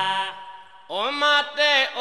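Accompanying music fades out into a short lull, then about a second in a man's voice starts a chanted devotional line in nagara naam style, with long sliding held notes.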